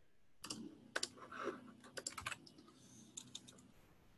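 Typing on a computer keyboard: faint, irregular key clicks as a chat message is typed out.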